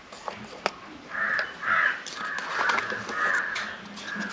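A crow cawing in the background, a run of about five harsh caws starting about a second in.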